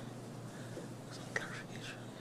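A pause in a man's speech: quiet room tone with faint, breathy, whisper-like sounds and a small click in the second half.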